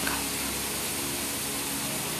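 Steady, even background hiss with no other event in it.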